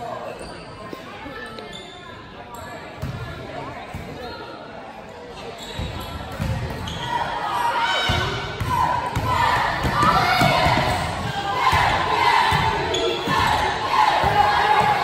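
Basketball dribbled on a hardwood gym floor, repeated bounces that grow louder and more frequent from about six seconds in. From about nine seconds in, voices of people shouting over the dribbling in the hall are the loudest part.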